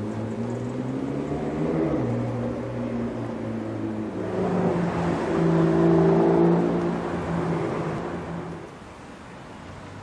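Two sports car engines passing one after the other. The first accelerates with a rising note over the first two seconds. The second passes loudest around the middle with a steadier note and fades away after about eight and a half seconds.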